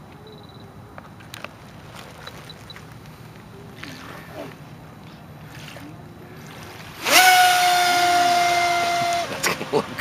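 Radio-controlled model jetboat with a KMB jet drive: its motor is quiet at low speed at first, then about seven seconds in the throttle is opened sharply into a loud, steady high whine, held for about two seconds before it is cut back.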